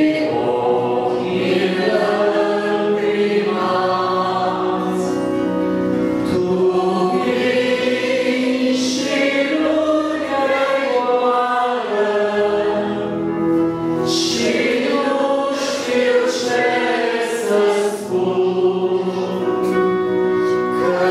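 A congregation of men's and women's voices singing a Romanian hymn in unison, accompanied by a piano accordion.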